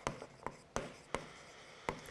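Stylus tapping and scratching on the screen of an interactive display board while words are handwritten: several faint, sharp taps scattered across the two seconds.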